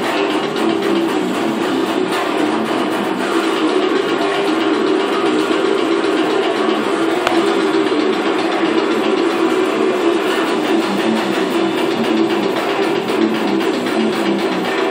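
Distorted electric guitar playing a death metal riff, steady and without a break.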